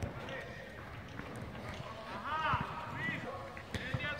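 Faint voices of the girls on the pitch, with two short high-pitched calls a little past the middle, over soft low thuds of running feet and ball touches on the turf.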